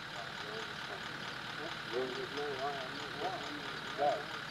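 Faint, quiet voices talking for a second or two in the middle, over a steady background hum.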